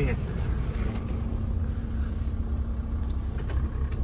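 Volkswagen van's engine running and low road rumble heard inside the cab, a steady low rumble with a constant hum over it.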